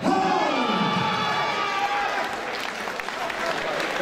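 A man's long, drawn-out call that falls in pitch over about two seconds, followed by a fight crowd cheering and applauding the winner being declared.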